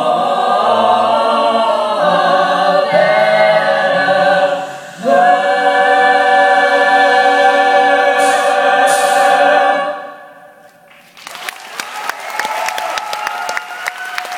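Mixed-voice a cappella group singing a sustained chord, breaking briefly about five seconds in, then holding a long final chord that fades out around ten seconds. Audience applause starts about a second later and runs on.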